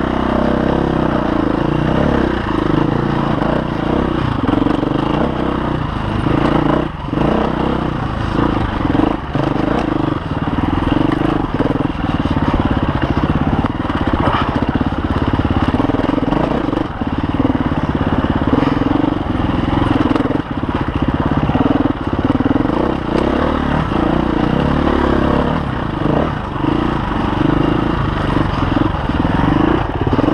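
KTM EXC-F 350 enduro motorcycle's single-cylinder four-stroke engine running under constantly changing throttle while riding, pitch rising and falling, with a few short knocks along the way.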